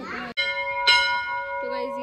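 A hanging temple bell is struck twice, about half a second apart, near the start. Its clear tone rings on and slowly fades.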